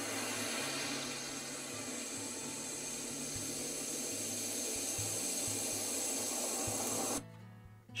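Surf from breaking ocean waves, a steady rushing hiss that cuts off suddenly about seven seconds in.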